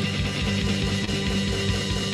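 Rock music from a band: electric guitar and drum kit playing a steady groove.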